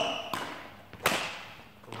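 Two sharp badminton racket strikes on a shuttlecock in a drive exchange, about 0.7 s apart, the second louder, each echoing briefly in the large hall.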